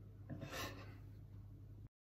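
Quiet room tone with a steady low hum and a brief soft noise about half a second in; the sound cuts off to complete silence near the end.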